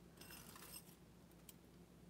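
Near silence, with a few faint, light metallic clicks and jingles of metal jewelry being handled: a bangle bracelet lifted from a pile of bracelets.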